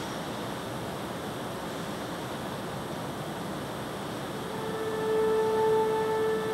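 Steady hiss of room noise; about four and a half seconds in, an organ begins a single held note that swells louder toward the end.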